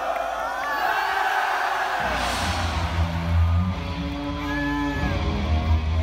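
A rock band playing live in an arena, heard from within the crowd, with the crowd yelling and cheering. The bass and drums come in heavily about two seconds in.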